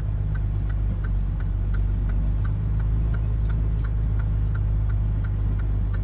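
Semi truck's diesel engine idling steadily, heard inside the cab as a low hum, with a light, even ticking about three times a second.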